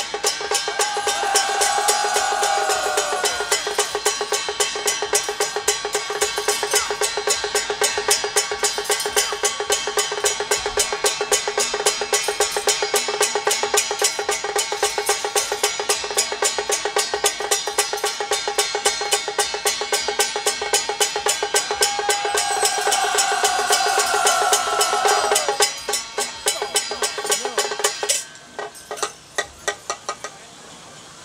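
Song Jiang Zhen troupe percussion of drum, gongs and cymbals beating a fast, steady rhythm, with a falling ringing tone near the start and again about three-quarters through. The playing thins out and stops near the end, leaving a few single strikes.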